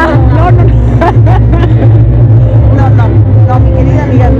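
Voices talking over background crowd chatter, with a steady low drone underneath.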